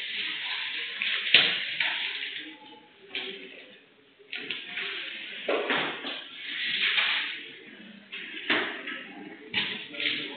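Muffled, indistinct voices and room noise, heard through a narrow-band security-camera microphone, with a sharp knock about a second in and two more near the end.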